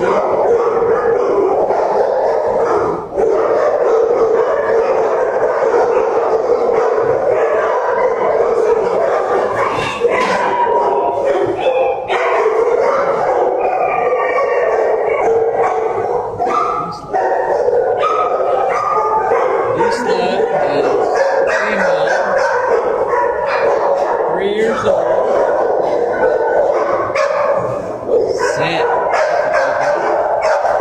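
Many dogs in shelter kennels barking at once, a loud continuous din of overlapping barks with no let-up.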